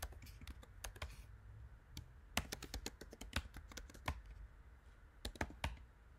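Typing on a computer keyboard: irregular key clicks, coming in quick runs about halfway through and again near the end.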